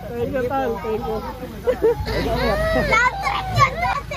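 A crowd of children shouting and squealing over one another, rising to high-pitched squeals about two seconds in.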